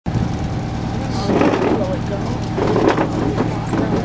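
Tour boat's engine running with a steady low hum, and people's voices talking over it from about a second in.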